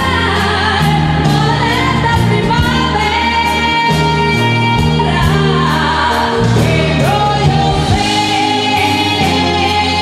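Live pop band with a female lead singer holding long sung notes over bass and keyboards, with backing vocals and drums keeping a steady beat. The lead voice holds one long note from about seven seconds in.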